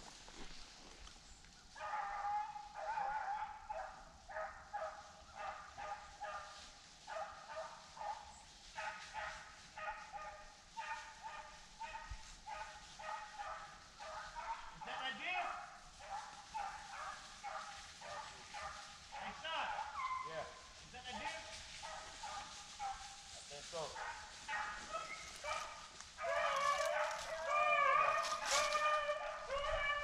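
A pack of beagles bay on a rabbit's trail: a steady string of short, repeated howling barks starts about two seconds in. Near the end the baying grows louder and thicker as several dogs give voice together, closing in.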